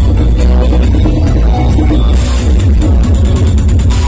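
Loud live band music through a concert PA, picked up from the crowd, with heavy bass throughout. About halfway through there is a crash, then a run of quick drum hits.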